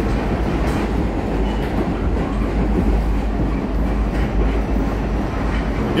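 Subway car in motion, heard from inside the car: a steady, loud rumble of the train running on the rails.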